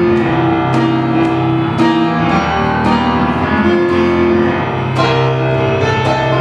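Solo piano played live: a medley of rock guitar songs and TV themes arranged for piano, with held chords and a steady run of struck notes.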